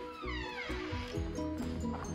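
Background music made of repeating notes over a steady beat. Near the start, a pitched sound slides downward over about a second on top of the music.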